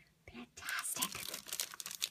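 Paper sheets and plastic-wrapped paper packs rustling and crinkling as a hand lifts and shifts them in a drawer, starting about half a second in.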